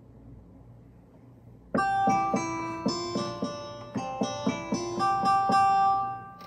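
A guitar sound from the GarageBand app on an iPad, played from a MIDI keyboard: after a quiet start, a short melody of plucked guitar notes begins about two seconds in, at roughly two notes a second.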